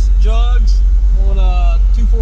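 A man talking inside a car cabin over a steady, very deep rumble that runs unbroken beneath his voice.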